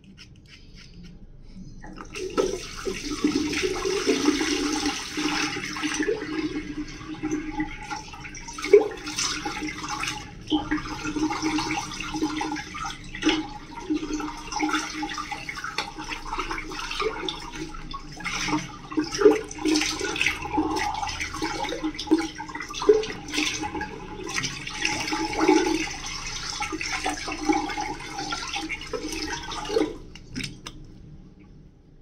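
Running water with hands splashing it onto the face, rinsing off shaving lather, in irregular splashes. It starts about two seconds in and stops at the very end.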